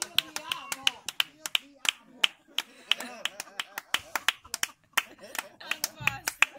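Scattered hand clapping from a small group of listeners: irregular sharp claps, several a second, with voices over them.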